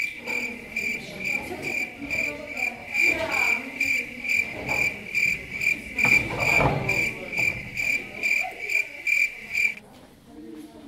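Cricket chirping, added as a sound effect: an even run of short high chirps about two a second that starts and stops abruptly.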